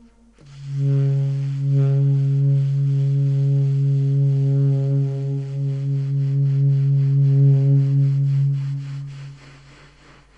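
Alto saxophone holding one long low note for about nine seconds, then fading away near the end: the closing note of the piece.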